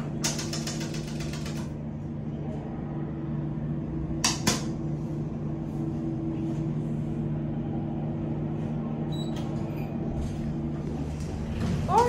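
Elevator car travelling between floors: a steady low hum from the elevator machinery, with a brief patter of clicks at the start and two sharp clicks about four seconds in. The hum stops near the end as the car arrives and the door begins to open.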